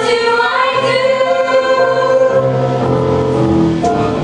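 A group of children singing a musical theatre song together over instrumental accompaniment, holding some notes for about a second.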